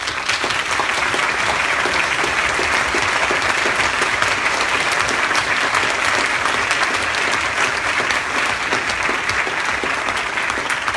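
Sustained applause from a large audience, dense and steady throughout.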